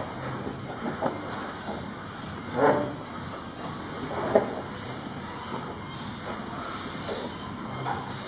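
Two grapplers shifting and scuffling against gym floor mats over a steady background hiss, with a short louder sound about two and a half seconds in and another just past four seconds.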